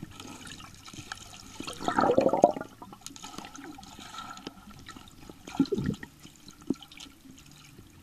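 Pool water heard through an underwater camera: a muffled, low wash of water movement, with a louder burst of bubbling about two seconds in and a few dull knocks around six seconds.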